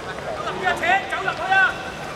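Men's voices shouting on the pitch: two loud, pitch-bending calls, one about a third of the way in and one near the end, over a background of chatter.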